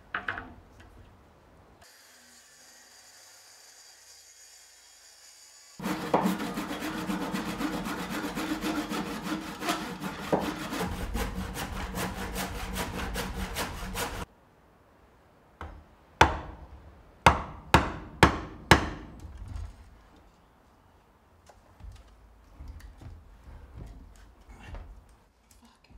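Handsaw cutting the sink opening in a thick Tasmanian blackwood slab, in quick, even strokes for about eight seconds. Then five sharp knocks on wood.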